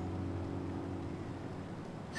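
Faint steady low hum of a few held tones over a soft background hiss, the tones fading out near the end.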